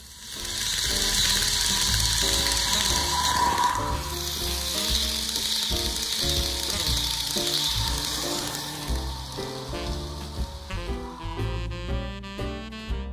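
HO scale model commuter train rolling past close by: a hiss of metal wheels on rail that swells early on and fades out about nine seconds in, over background music.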